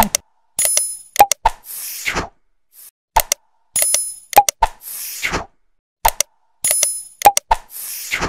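Animated subscribe-button end-card sound effects: a few sharp clicks, a short bell-like ding and a whoosh. The same sequence plays three times, about three seconds apart.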